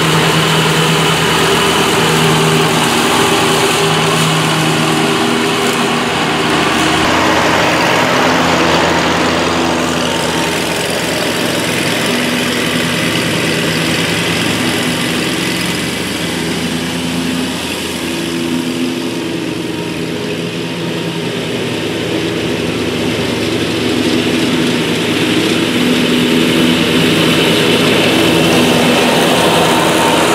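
Scag Cheetah zero-turn riding mower running steadily at mowing speed, its blades cutting thick grass. It gets a little quieter in the middle as it moves away, and loudest near the end as it passes close.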